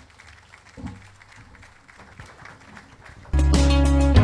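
Faint crowd noise with scattered clapping, then loud music with a heavy bass cuts in suddenly about three seconds in.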